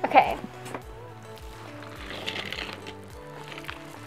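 Background music with held tones over a regular low beat. There is a brief loud sound just after the start and a rustle of the plastic mailing bag being handled about two seconds in.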